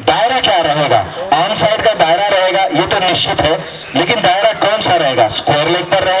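A man speaking continuously, as in live match commentary.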